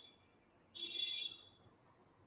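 A faint, short high-pitched electronic tone, about half a second long, sounding about a second in.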